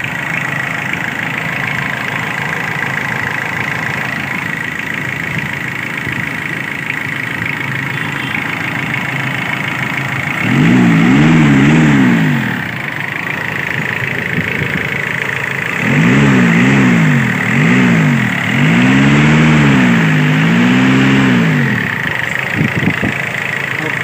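Tata Sumo Victa's diesel engine running at idle and revved in quick repeated throttle blips, about ten seconds in and again for several seconds from about sixteen seconds. The engine has just been retimed after a timing belt replacement.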